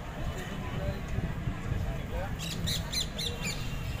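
Steady low rumble of a passenger train running, heard from on board. A little past halfway comes a quick run of five or six short, harsh, high calls.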